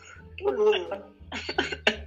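A person's voice, followed near the end by several short, sharp vocal bursts in quick succession, like coughs.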